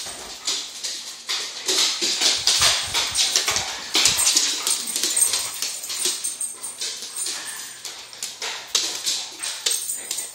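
Boxer dog scuffling after a soccer ball on a hardwood floor: many quick knocks and scrapes of paws, claws and ball, with dog noises among them.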